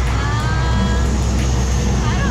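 An engine running steadily with a low rumble, and a faint whine that rises slightly during the first second, then holds.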